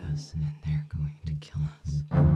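A low pulsing beat of trailer score, about five pulses a second, with breathy whispered voice sounds over it.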